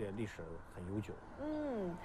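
A few soft spoken syllables, then about one and a half seconds in a drawn-out vocal "ohh" of interest from a woman, rising slightly and then falling in pitch.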